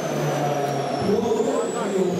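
Indistinct background voices over steady hall noise, with a faint high tone slowly gliding up and down.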